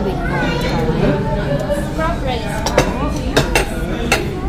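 Ceramic plates and metal cutlery clinking on a table as dishes are served, with several sharp clinks in the second half, over chatting voices.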